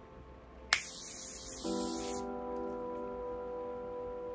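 A facial mist spray bottle, Chanel Hydra Beauty Essence Mist, gives one spray: a hiss of about a second and a half that starts and stops sharply under a second in. Soft background music with held chords comes in partway through.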